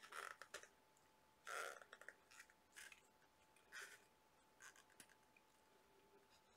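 Near silence, with about five faint, brief rustles from the gloved hand and cup as acrylic paint is poured in a swirl onto small canvases; a faint steady hum runs underneath.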